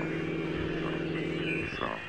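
A steady low pitched tone with a few overtones, held after a downward glide, that stops shortly before the end.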